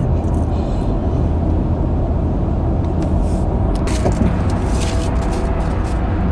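Steady low road and engine rumble inside the cabin of a car on the move.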